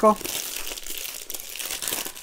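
Thick clear plastic shrink-wrap film crinkling and rustling as hands pull and crumple it off a mediabook case.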